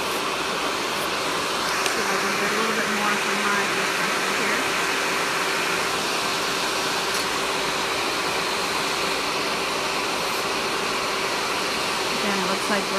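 Electric nail file with a coarse sanding band running at high speed, with a steady whirring hiss as it sands gel colour off a nail.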